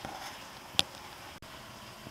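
Faint steady room hiss with a single short, sharp click a little under halfway through, then a brief dropout in the sound where the recording is cut.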